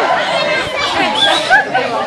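An audience chattering, many voices overlapping, as the cheering before it dies down.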